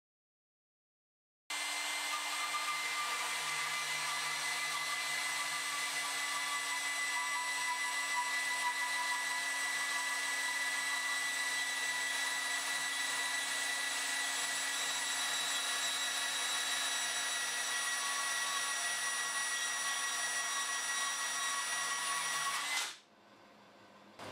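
Milwaukee HD18 BS 18 V cordless bandsaw cutting through a 20 mm square steel bar: a steady, even-pitched motor and blade whine that starts about a second and a half in and stops suddenly near the end as the blade comes through the bar.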